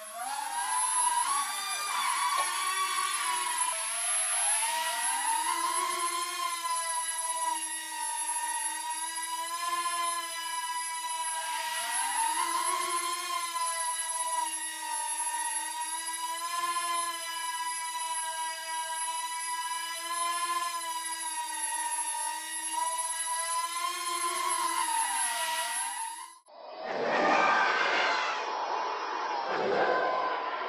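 Air Hogs Millennium Falcon toy quadcopter's four small electric rotors whining steadily in flight, the pitch dipping and climbing back every few seconds as the throttle is worked. Near the end the whine cuts off suddenly and a swelling whooshing sound takes over.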